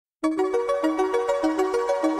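Intro music: a quick rising four-note figure in a bell-like tone, repeated over and over, starting a fraction of a second in.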